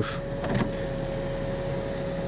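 Electric motor of a Honda Jazz's panoramic glass roof blind running as it draws the blind automatically across the roof: a steady, even hum at one pitch.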